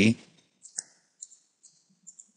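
Computer mouse clicking, several small clicks in a row.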